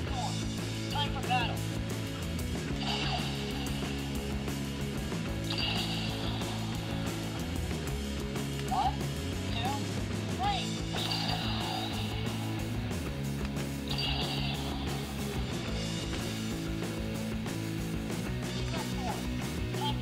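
Battery-powered sound-effect weapon on a Power Rangers T-Rex Battle Zord toy, pressed several times, playing short electronic sound effects and recorded voice phrases through its small speaker over steady background music.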